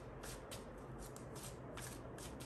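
A deck of tarot cards being shuffled by hand: a quiet run of soft, quick card flicks, about four or five a second.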